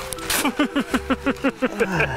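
A man laughing: a quick run of about ten short laughs, each dropping in pitch.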